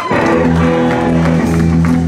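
Live roots band, with upright bass, drums and guitars, holding a sustained chord. The chord comes in sharply just after the start and holds steady.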